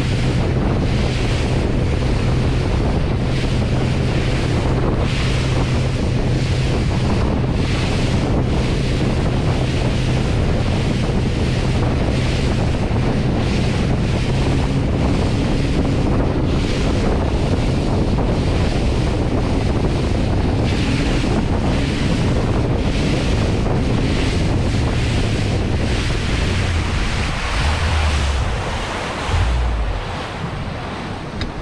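Mercury 115 Pro XS outboard running at planing speed with a steady drone, under heavy wind buffeting on the microphone and the rush of water. Near the end the engine note drops and the level sags as the motor loses power and stumbles out, the recurring fault the owner can't pin on fuel or electrical.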